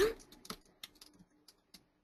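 A short thump at the start, then irregular clicks of computer keys, about seven of them over the next second and a half.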